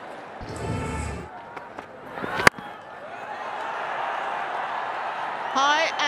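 A brief rushing burst about half a second in, then a single sharp crack of a cricket bat striking the ball about two and a half seconds in, followed by stadium crowd noise building up.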